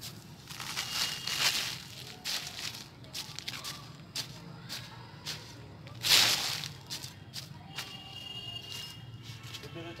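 A shovel scooping and scraping through a heap of crumbly compost on a plastic sack sheet, in a run of irregular scraping strokes, the loudest about six seconds in.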